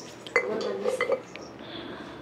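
Ceramic and glass knick-knacks clinking against each other and the wire of a shopping cart as they are handled, with a few sharp clinks about a third of a second in and around one second.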